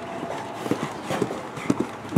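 Hoofbeats of a horse cantering on a sand arena: a run of dull, uneven thuds that grow louder near the end as the horse comes close.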